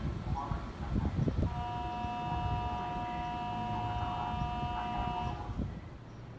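Kintetsu train horn sounding one long steady two-tone blast, starting about a second and a half in and stopping about four seconds later.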